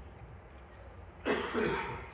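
A man coughs, a short double burst a little over a second in, picked up close by a handheld microphone.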